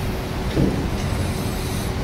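Steady room noise through the lectern microphone, a low rumble and hiss with a faint hum, during a pause in the talk. A brief short vocal sound comes about half a second in.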